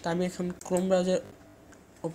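Speech only: a voice talks for just over a second, then pauses.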